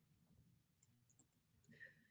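Near silence: a pause with only faint background noise.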